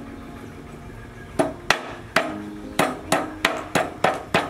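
A cleaver chopping on a wooden cutting board: about seven sharp chops, starting about a second and a half in and coming roughly three a second.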